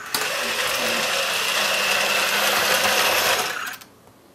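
iRobot Create's geared drive motors whirring steadily as the robot undocks from its charging base and drives away. The sound starts just after the beginning and fades out shortly before the end.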